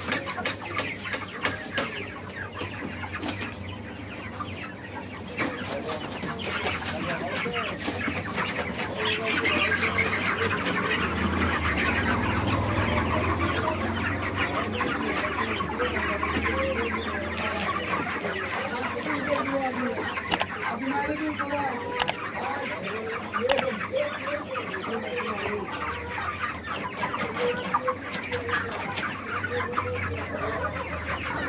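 A crowded flock of broiler chickens clucking and calling in a dense, continuous chatter over a low steady hum, growing louder about nine seconds in.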